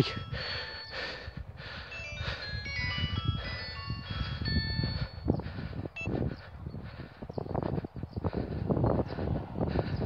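A chiming tune of short, high, clear notes at changing pitches plays through the first half and then fades. Throughout there is a low, gusty rumble of wind on the microphone.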